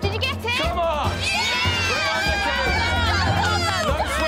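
Several voices shouting at once over background music with a low, pulsing bass.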